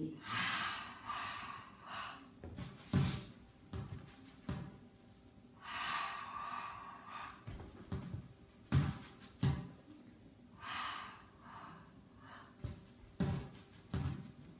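A woman breathing hard through a Pilates leg exercise: three long, breathy exhalations a few seconds apart, with short, sharp breaths between them.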